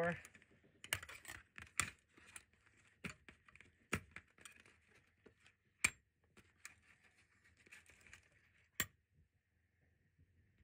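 Steel scissors, clamps and tweezers clicking and clinking against each other and the tabletop as they are turned over by hand: scattered light clicks, the sharpest about 6 and 9 seconds in.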